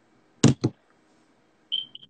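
Two sharp knocks in quick succession from a phone being handled against its microphone. About a second later come a brief high-pitched chirp and two fainter repeats of it.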